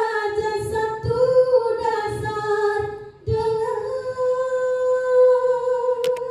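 Women's qasidah group singing a religious melody together in unison. Soft low beats run under the first half. After a brief break about halfway through, the voices hold one long steady note.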